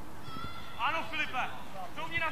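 Children's high-pitched shouts and calls during play, a quick run of several calls about a second in.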